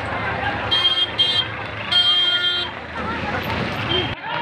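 Vehicle horn sounding two short toots and then a longer blast, over the chatter of a crowd and street noise.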